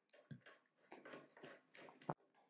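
Near silence, with a few faint small clicks as an arrow rest's mounting bolt is turned by hand into a bow riser.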